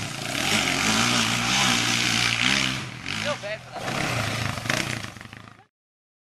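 Small quad (ATV) engine running under throttle, its pitch wavering up and down as it is ridden around a dirt track. The sound cuts off abruptly near the end.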